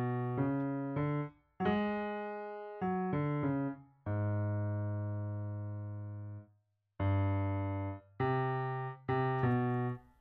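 Piano bass line played with the left hand alone: a run of low single notes in a quick rhythm, one held for about two and a half seconds in the middle, with brief silences between the groups of notes.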